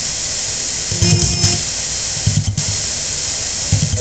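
Spirit box radio scanning: continuous loud static hiss, broken by brief snatches of broadcast sound as it sweeps through stations, about one second in, around two and a half seconds, and again near the end.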